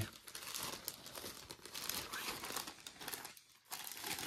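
Clear plastic bag crinkling as hands handle it, stopping briefly a little past three seconds in.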